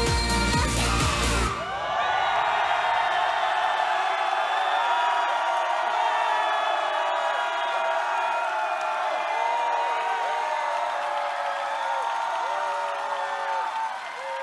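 A K-pop song's closing bars with heavy bass, which stop abruptly about a second and a half in, followed by a studio audience cheering, many voices together.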